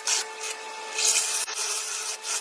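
Cordless drill running with a cutter attachment pressed into the end grain of wooden posts: a steady motor whine under a loud rasping hiss of cutting wood. The hiss swells and eases as the cutter moves from one post end to the next.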